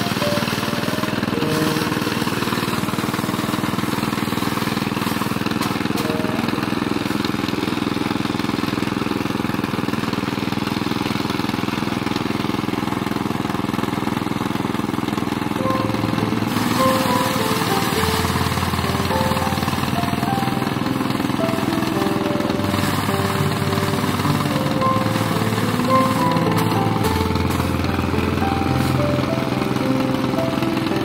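A small engine driving a mini rice thresher's spiked drum runs steadily while bundles of rice stalks are fed in. Background music is laid over it, and its melody and bass notes come through more plainly in the second half.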